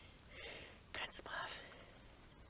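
Soft, whispered words spoken close to the microphone: two short breathy phrases, about half a second in and again about a second in.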